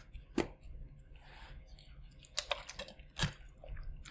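A few light clicks and crackles of a plastic water bottle being handled and opened, scattered through the quiet, with a small cluster about two and a half seconds in.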